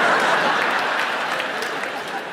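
Stand-up audience applauding, a steady clatter of many hands that fades gradually toward the end.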